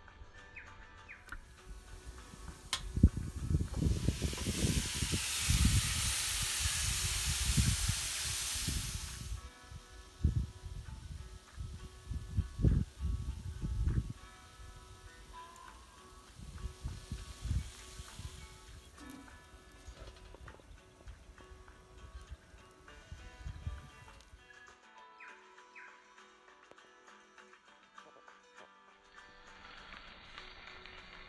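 Background music with a steady melody. For a few seconds early on it is overlaid by a loud rushing noise with deep rumbles, and fainter irregular rumbles come and go until near the end.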